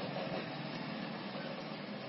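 Steady background noise: an even hiss with no distinct strokes or clicks.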